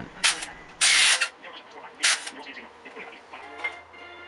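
Cordless impact driver running in three short bursts as it spins out bolts holding the front accessories on an engine block. The second burst, about a second in, is the longest.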